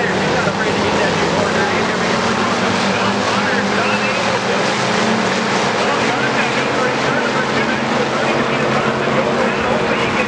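A pack of hobby stock race cars running at speed around a dirt oval, their V8 engines making a loud, steady, overlapping drone, with voices over it.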